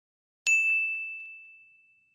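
A single bright ding sound effect, struck about half a second in and fading away over about a second and a half: the chime of an animated subscribe-button and notification-bell click.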